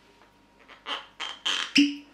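Cork stopper of a whisky bottle being worked out of the glass neck: four quick squeaks, each louder than the last, ending in a pop with a short hollow ring from the bottle near the end.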